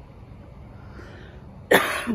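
A single sudden, loud cough from a woman near the end, after a stretch of faint background; she has been repeatedly clearing her throat as if something is caught in it.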